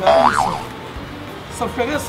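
A short comic 'boing' sound effect, about half a second long, its pitch rising and then falling, followed by a man talking near the end.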